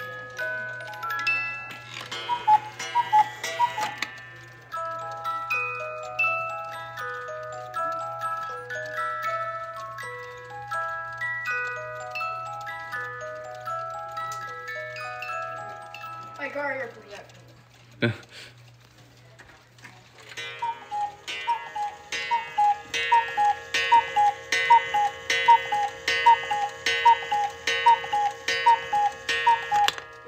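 The music box of a mechanical Black Forest cuckoo clock plays a melody of clear plucked notes while its dancing figures turn. The tune ends about 16 seconds in, and there is a single click just after. Near the end, another clock starts a louder, quick repeating tinkling pattern of about two notes a second over a held tone.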